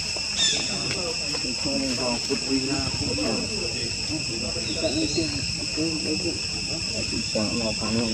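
Steady, shrill insect chorus holding a few high pitches, with indistinct voices talking underneath and a couple of brief chirps near the start.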